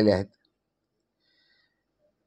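A man's speaking voice trails off about a quarter second in, followed by near silence: a pause in his talk.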